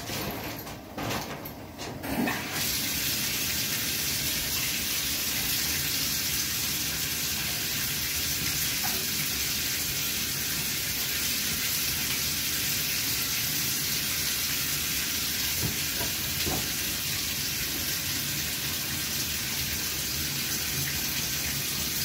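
A shower running behind a curtain: a steady, even rush of water spray that starts about two and a half seconds in, after a few brief knocks.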